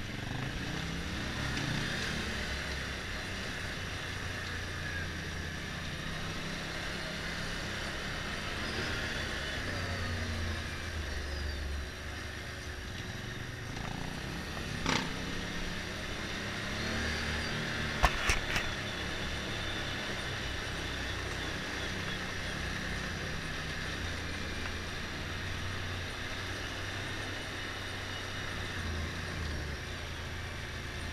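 Motorcycle engine running at low speed, its note rising and falling with the throttle, over the rumble of tyres on cobblestones. A sharp knock about halfway through, and a quick cluster of three knocks a few seconds later.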